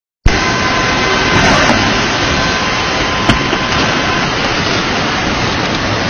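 Steady, loud rushing of fast-flowing floodwater surging through a street. A few faint steady high tones sound through the first half, and there is a single sharp click about three seconds in.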